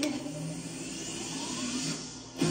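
A synthesised whoosh rising slowly in pitch, a transition effect within a live pop performance's backing track.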